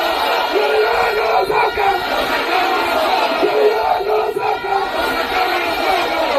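Large crowd of demonstrators shouting together, a continuous mass of raised voices.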